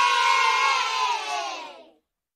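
A group of children cheering together in one long shout, sinking slightly in pitch as it fades out near the end.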